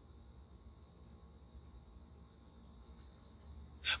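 Faint, steady high-pitched whine over a low hum.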